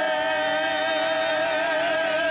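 A singer holding one long high note with a slight vibrato in gospel praise-and-worship singing, with keyboard accompaniment underneath.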